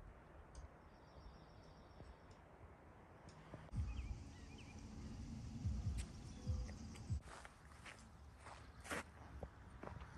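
Faint footsteps over a quiet outdoor background. From about four seconds in, low rumbling gusts come and go for a few seconds.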